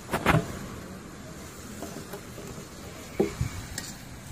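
Metal lid of a dough-sealed biryani pot being pried open with a metal spatula: two sharp metal knocks just after the start, then another knock about three seconds in and a light click near the end.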